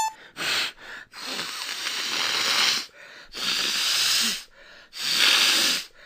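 A voice wheezing in four breathy, hissing breaths, the second one the longest at nearly two seconds.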